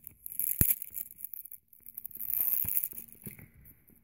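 Rustling handling noises with a single sharp plastic click about half a second in, then a few faint ticks.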